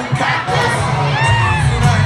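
Concert crowd screaming and cheering over loud live rock music from the band. The band's low end thins out briefly and comes back in about half a second in, with high-pitched screams standing out shortly after a second in.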